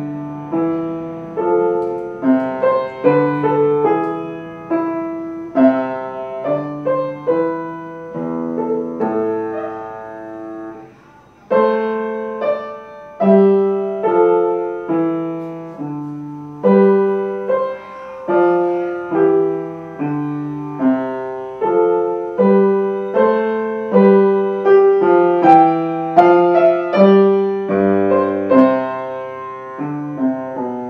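A minuet played on piano with both hands, single melody notes over a low bass line. The playing breaks off briefly about eleven seconds in, then carries on.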